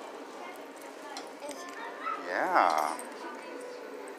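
A short wordless vocal sound, its pitch rising and then falling, a little over two seconds in, over a steady background hum.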